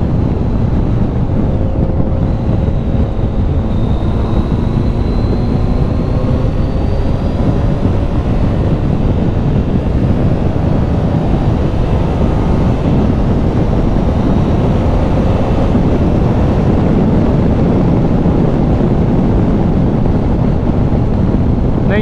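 Wind buffeting the microphone at riding speed, a steady low roar, over the 2013 Triumph Tiger 800's three-cylinder engine, whose faint note drifts slowly up and down in pitch.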